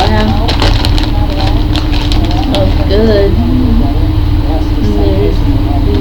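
Low, half-voiced talking over a steady, loud low rumble and hum, with a few short crackles near the start.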